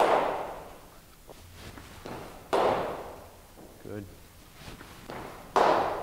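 Three sharp cracks of a hard cricket ball in indoor net batting practice, each followed by an echo. They come roughly two and a half to three seconds apart.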